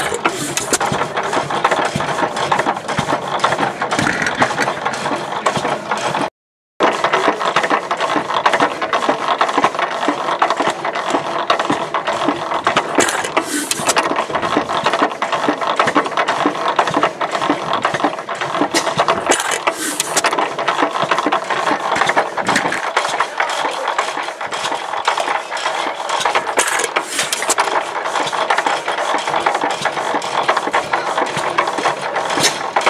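Economy 4 HP hit-and-miss gas engine running close up, a dense steady mechanical clatter from its moving parts. The sound cuts out for about half a second around six seconds in.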